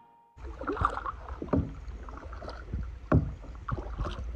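Kayak paddle blades dipping and splashing in river water, several separate strokes, over a steady low rumble of wind on the microphone.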